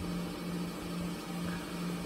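Washing machine running: a steady low hum.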